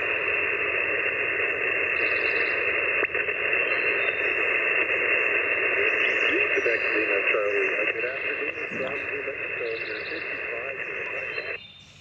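Amateur radio transceiver's speaker giving a steady band of receiver hiss, with a faint, weak voice of a distant station buried in the noise, heard with the receiver preamp switched on. The hiss cuts off suddenly near the end.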